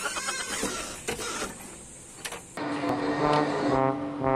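Noisy rustling with a few clicks, then about two and a half seconds in a small portable AM/FM radio suddenly starts playing a simple tune.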